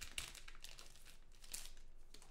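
Foil trading-card pack wrapper crinkling and tearing as it is ripped open by hand, in faint short rustles, the clearest about a second and a half in.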